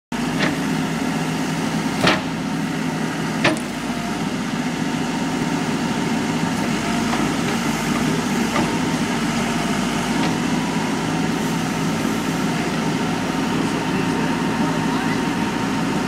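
Caterpillar backhoe loader's diesel engine running steadily, with a few sharp knocks in the first few seconds.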